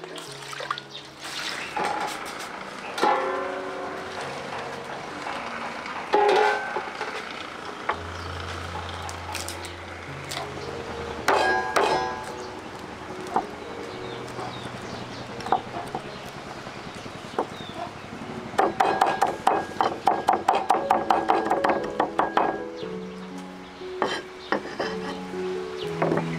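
Background music with steady held notes, with scattered knocks and clinks of kitchen handling. In the last third, a cleaver chops garlic on a round wooden chopping block in a quick run of strikes, about five a second, for about four seconds.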